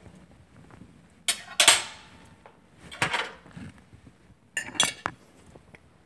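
A fork and ceramic plate handled: a few short clinks and scrapes about a second in, around three seconds in, and just before the end.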